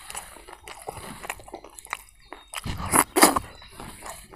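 Close-miked mouth sounds of a man chewing food eaten by hand: soft wet clicks and smacks, then a few louder wet smacks about three seconds in.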